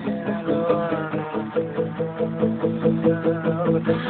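Acoustic guitar played in a steady, even rhythm, its notes ringing on between strokes.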